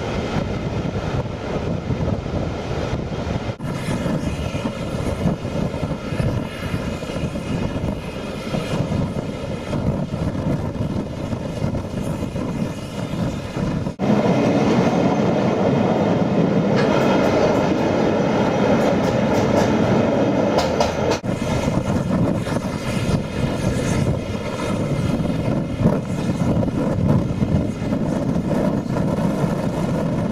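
A steam-hauled passenger train in motion, heard from a carriage window: a steady rumble of wheels on rail mixed with rushing air. The sound shifts at several cuts and gets louder about halfway through.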